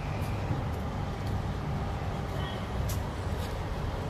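Low, uneven rumble of wind buffeting a phone microphone during outdoor handheld filming, with a few faint clicks.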